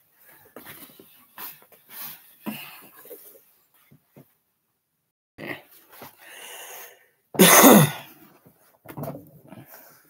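Rustling and light knocks of someone moving and handling things close to the microphone, then, about seven and a half seconds in, a short, loud vocal sound that falls in pitch, the loudest thing heard.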